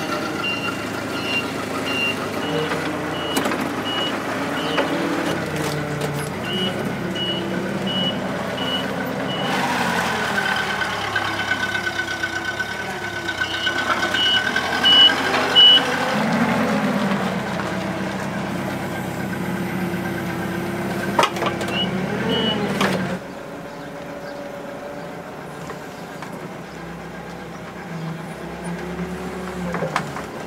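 Cat propane forklift running and manoeuvring, its backup alarm beeping repeatedly in spells while it reverses. A steady whine joins the engine for several seconds in the middle, and about three-quarters of the way through the engine sound drops to a quieter level.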